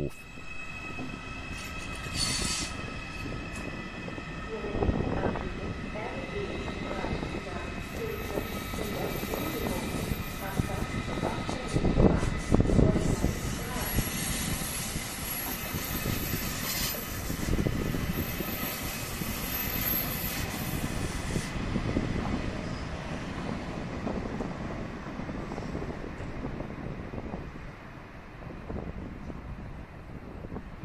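An ICE 4 electric high-speed train running through the station and moving away, with a continuous rumble of wheels on rail. A high-pitched hiss lies over the middle stretch, the sound is loudest about twelve seconds in, and it fades near the end as the train leaves.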